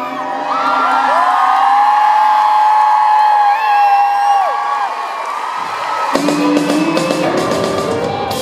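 Live pop ballad performance by a vocal group: a long held sung note with sliding runs over a light backing, then the full band, bass included, comes back in about six seconds in.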